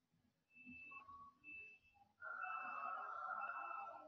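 A faint high beep repeating about once a second, each beep about half a second long. From a little past two seconds in, a louder rough noise joins it and runs on.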